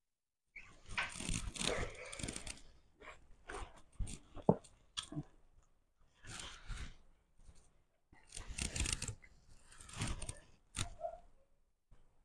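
Eating sounds: fried food torn apart by hand and chewed with crunching, in irregular bursts with short pauses between, and a sharp click about four and a half seconds in.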